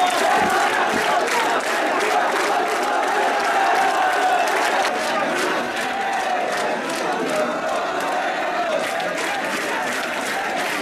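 Dense crowd noise: many men shouting and cheering together, with scattered hand-clapping running through it.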